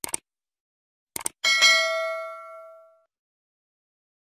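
Subscribe-button animation sound effects: a quick double click, another double click just over a second later, then a bright notification-bell ding that rings out and fades over about a second and a half.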